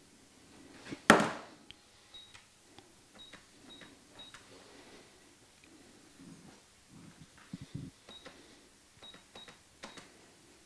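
Keys of an electronic desktop calculator being tapped in short runs, several presses giving a brief high beep. A single sharp knock about a second in is the loudest sound.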